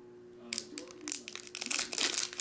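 Foil trading-card pack wrapper crinkling in the hands as it is opened, in irregular sharp crackles starting about half a second in.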